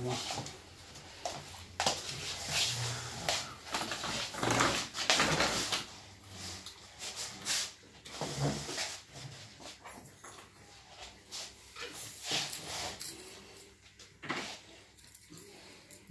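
Knocks and rustles of a stroller's aluminium frame being handled and turned over, irregular and loudest a few seconds in, with a few short voice-like sounds in between.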